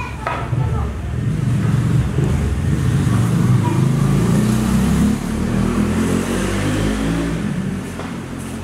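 Indistinct voices over a loud, low rumble that swells slightly through the middle.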